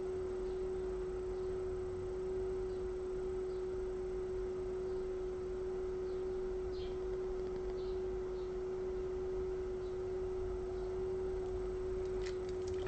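A steady, unchanging pure tone held at one pitch, with a low hum beneath it.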